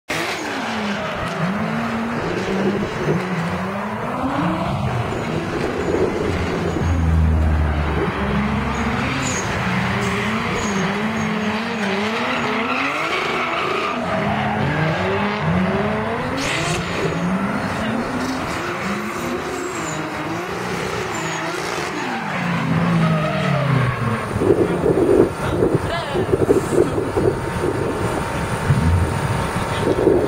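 Drift cars, one a BMW E36 M3 with its straight-six, being revved hard through a tandem drift run: the engine note climbs and drops again and again as the throttle is worked, with tyre squeal. The sound gets louder and rougher for the last several seconds.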